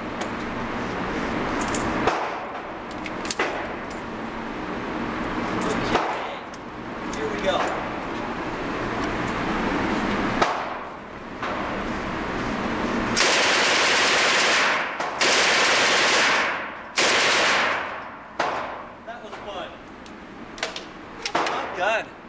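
Port Said 9x19mm submachine gun, the Egyptian copy of the Swedish K M/45, fired full-auto in three loud bursts of roughly a second and a half, a second and a half, and one second, echoing in an indoor range. Before the bursts come scattered sharp reports over steady range noise.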